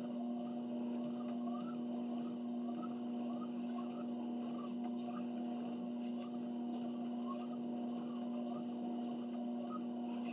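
Electric treadmill running at walking pace: a steady motor hum, with a soft rhythmic rise and fall about every two-thirds of a second from walking steps on the belt.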